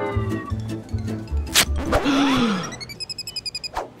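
Comedic brass music that fades out in the first half, broken by a sharp click. It is followed by a monkey's short falling call and then a quick high chattering of about eight chirps a second.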